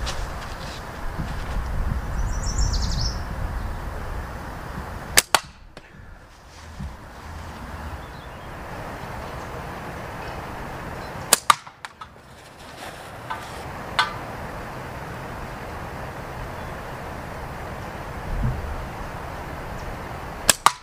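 Two slingshot shots about six seconds apart, each a sharp snap of flat latex bands releasing, with the second followed a split second later by an 8 mm steel ball striking the target. A fainter knock comes a couple of seconds after the second shot.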